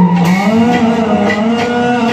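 Assamese Bhaona devotional music: a long sung note held, sliding upward about half a second in and then held again, over light percussion strokes.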